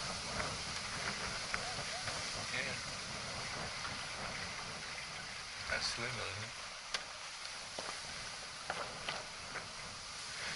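Wind on the microphone and water rushing along the hull of a small wooden sailing yacht under way, a steady noise with scattered small ticks and knocks.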